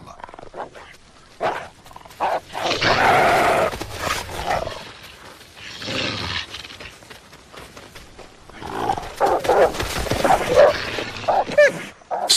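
Gray wolves vocalizing at a bison calf carcass, in several separate bursts, the longest through the last few seconds.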